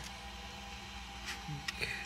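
A few faint plastic clicks as a 3D-printed PLA part is pushed through a hole in another printed part, over a quiet steady hum.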